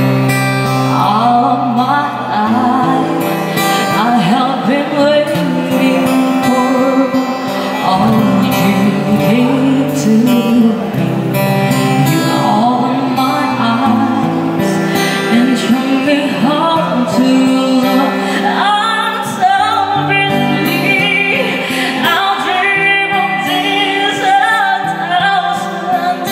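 A woman sings a slow song into a microphone through a PA, accompanied by an acoustic guitar, with long held notes.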